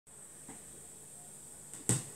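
Faint steady hiss with a soft click about half a second in, then one sharp, louder click just before the end.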